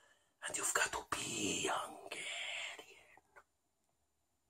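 A man whispering in breathy, hissy bursts for about three seconds, then going quiet.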